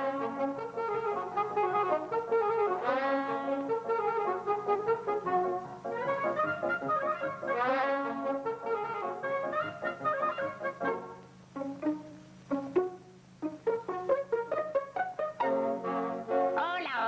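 Brass-led orchestral cartoon score playing a lively theme. About eleven seconds in it thins to short, separated notes and grows quieter, then picks up again near the end.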